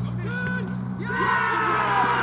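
Several players and spectators break into shouting and cheering about a second in, as a goal is scored in an amateur football match, over a steady low hum.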